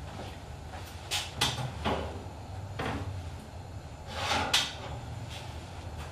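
Countertop toaster oven being opened and a baking dish lifted out: a series of short metal clicks and knocks, the loudest about four and a half seconds in.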